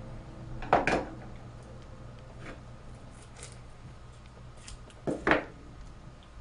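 Scissors set down on a countertop with a clack about a second in, then a few faint handling taps, and another sharp knock a little before the end.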